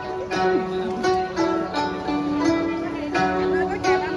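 An ensemble of guzheng (Chinese zithers) playing a melody together, with plucked notes ringing on after each stroke.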